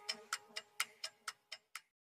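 Faint clock-like ticking, about four ticks a second and growing fainter, ending a song, with a held note dying away about a second in.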